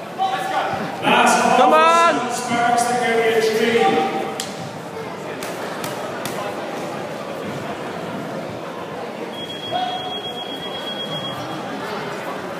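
Spectators shouting encouragement at a kickboxing bout, loudest and most strained in the first four seconds. After that comes the echoing din of a large sports hall with faint scattered thuds. Near the end a thin, high, steady tone sounds for under two seconds.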